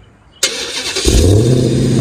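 Dodge Challenger Hellcat Redeye's supercharged Hemi V8 starting by remote start: the starter cranks briefly from about half a second in, the engine catches about a second in and settles into a loud, steady idle.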